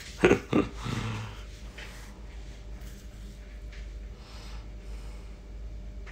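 A man's short snorting laugh: two loud breathy bursts just after the start, trailing off within about a second, then only faint scattered noises over a low steady hum.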